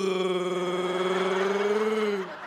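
A man's voice holding one long, steady note, with a slight wobble in pitch.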